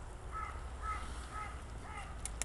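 A bird calling four times in quick succession, about two short arched calls a second.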